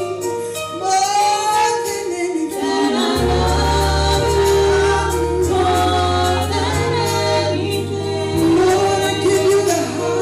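Gospel vocal group of three women and a man singing in harmony, with sustained low bass notes of the accompaniment coming in about three seconds in and changing pitch a few times.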